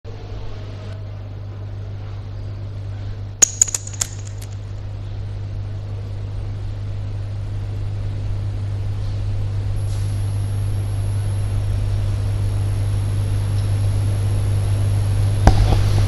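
Steady low hum that grows gradually louder, with a quick cluster of sharp clicks about three and a half seconds in and a faint high whine joining around ten seconds.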